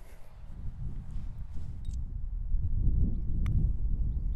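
Wind rumbling on the microphone, growing stronger over the last part, with a single sharp click near the end as a putter strikes a golf ball.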